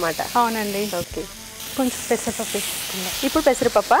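Food frying in a pan with a steady sizzle, stirred with a wooden spatula, under women talking.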